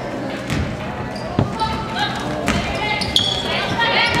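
A basketball bouncing on a hardwood gym floor as it is dribbled, a few bounces about a second apart, echoing in the gym.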